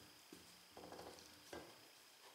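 Near silence, with a few faint, brief strokes of a pastry brush spreading olive oil over the cut flesh of acorn squash halves.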